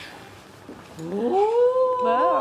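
A long, drawn-out 'wow' exclamation that starts about a second in, rising in pitch and then held.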